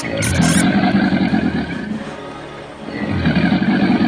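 Two long, low rumbling bursts over background music, the first lasting about two seconds and the second starting about three seconds in.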